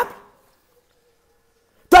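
Near silence: a pause in a man's speech, his last word fading out at the start and the next word beginning near the end.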